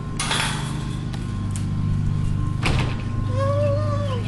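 Chain-link gate being opened: a short scraping rattle of metal, then a single sharp metal clank about two and a half seconds later.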